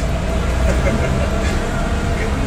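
Steady rumble of road noise inside a moving car's cabin, with faint voices under it.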